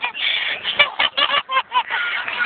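A woman laughing uncontrollably in rapid, high-pitched bursts, several a second, with short gasps between them.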